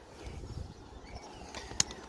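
Quiet outdoor background with one sharp click near the end.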